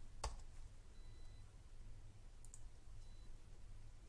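Computer mouse clicks: one sharp click about a quarter second in, then a faint quick double click past the middle, over a low steady hum.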